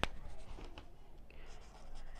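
A pen clicks sharply once as it is opened, then faint scratching of the pen writing on notebook paper.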